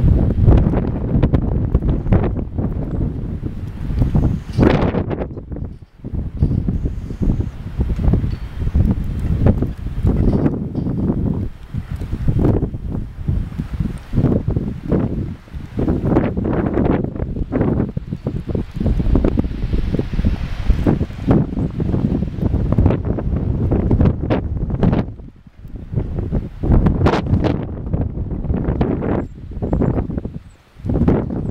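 Wind buffeting the microphone in loud, uneven gusts, with brief lulls.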